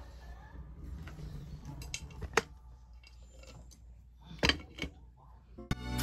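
A few sharp light clicks and knocks from small hard objects being handled, over a faint low background rumble, with a backing music track starting just before the end.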